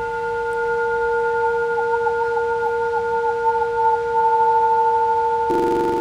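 A hand-held metal singing bowl, struck with a wooden mallet, rings on with a steady low note and two higher overtones sounding together. The middle overtone wavers for a couple of seconds.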